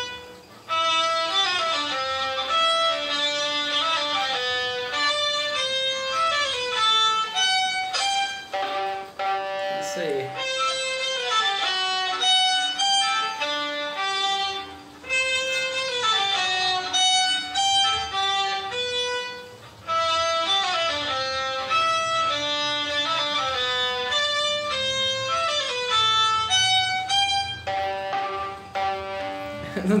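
Solo violin playing a melody of held notes with vibrato, in phrases broken by short pauses about half a second, fifteen seconds and twenty seconds in. The player is a student still working on a wider wrist-and-arm vibrato; he still vibrates partly from the finger.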